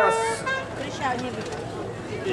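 A long, steady note on a horn-like wind instrument cuts off about a third of a second in, followed by faint voices.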